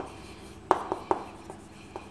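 Chalk writing on a chalkboard: a few sharp taps and short scratches as a word is written, three taps close together a little before the middle and fainter ones near the end.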